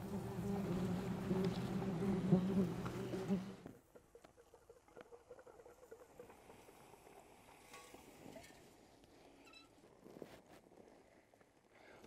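A swarm of yellow jackets buzzing in a steady drone, which cuts off suddenly about four seconds in, leaving near silence with a few faint ticks.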